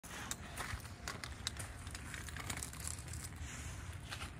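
Irregular crackles and clicks over a steady low rumble: movement and handling noise from a phone camera being carried about.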